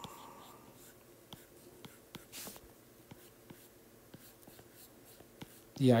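Stylus tapping and stroking on an iPad's glass screen while sketching: faint scattered ticks, with a short scratchy stroke about two seconds in.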